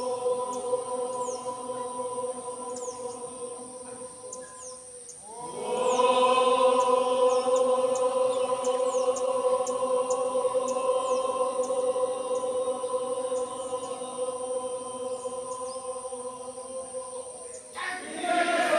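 A crowd chanting a Tibetan sangsol prayer in unison on long held notes. The chant thins out about four to five seconds in, then comes back louder and carries on steadily.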